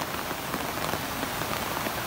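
Steady rain falling, with many small drop hits heard close by.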